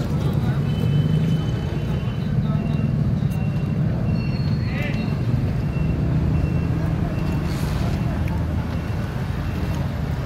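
Steady rumble of street traffic from motor vehicles, with faint voices in the background and a brief higher-pitched sound about halfway through.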